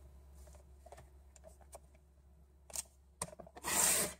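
Paper being handled on a paper trimmer: a few soft taps and rustles, then a short, louder swish of a sheet sliding just before the end.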